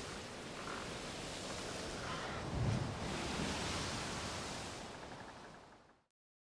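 Sea waves washing on a rocky shore, a steady rush with one swell a little over halfway through, fading out toward the end.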